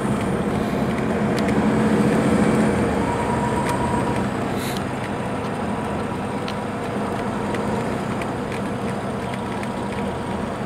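Inside the cabin of a 2015 MCI D4505 coach at highway speed: the Cummins ISX diesel engine drones steadily under road and tyre noise, a little louder in the first few seconds and then easing off slightly. Small rattles click now and then.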